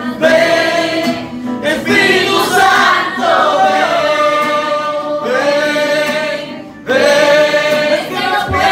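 Worship singing into a microphone, with long held notes in phrases and a short break near the end before the next phrase comes in.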